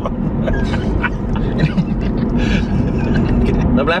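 Steady low rumble of road and engine noise inside a moving car's cabin, with laughter over it.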